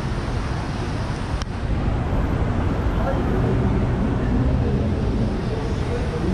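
Street traffic: a steady rumble of cars passing on a busy city boulevard, with faint voices mixed in from about two seconds in.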